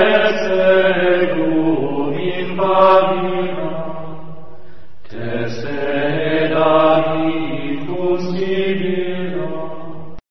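A chanted mantra, a voice singing long held notes in a slow melody, in two phrases with a short break halfway through.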